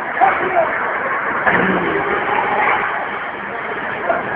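Ice hockey rink ambience: indistinct voices over a steady, dense background noise.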